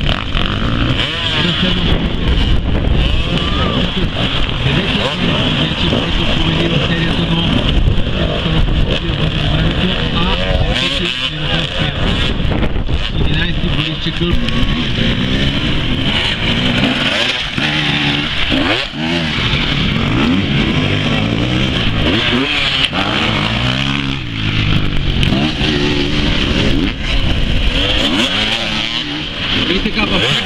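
Enduro dirt-bike engines revving, their pitch climbing and falling again and again, with spectators' voices.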